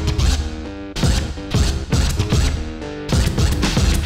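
DJ mix played from turntables through Serato: a beat with a heavy low hit about once a second and short runs of stepped pitched notes between the hits.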